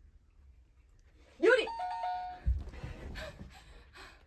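Two-note 'ding-dong' chime, a higher note then a lower one, about two seconds in: a game show's correct-answer sound effect. A short voice exclamation comes just before it and laughter after it.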